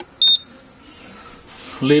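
One short, high electronic beep from the UV curing unit's timer keypad as its timer is set.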